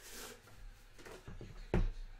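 A Topps Dynasty trading-card pack box handled over a wooden table: a brief rustle, then a few light knocks as the box is put down, the last and loudest near the end.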